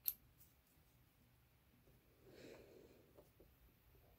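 Near silence, with one sharp click right at the start as a hand-held metal eyelet setter is pressed into the corset fabric, and a faint soft rustle of cloth about two and a half seconds in.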